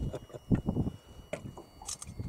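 Close rustling of a jacket with irregular soft knocks from handling, and a couple of sharp clicks near the end.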